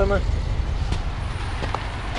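Subaru Outback's engine idling, a steady low hum heard from close under the car.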